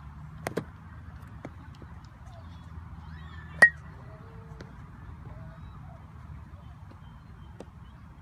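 A metal baseball bat hits a baseball once, a sharp ping with a short ringing tone, a little past the middle. Two fainter knocks come about half a second in.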